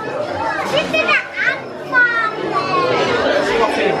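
Children's voices: high-pitched talking and calling out, with general chatter around them in a large indoor room.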